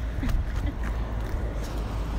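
Wind buffeting a phone microphone, a steady low rumble, with faint scuffing footsteps on sandy rock.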